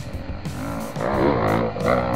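Background music with guitar and a steady beat; from about a second in, a louder pitched part wavers up and down.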